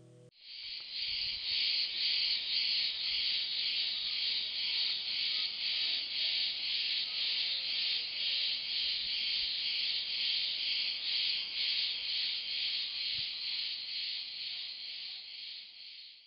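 A chorus of crickets chirring in a steady high pulse, about three beats a second. It fades in just after the guitar stops and fades out near the end.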